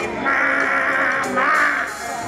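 Live band music with one raspy, high held vocal cry over it, wavering in pitch for most of the two seconds.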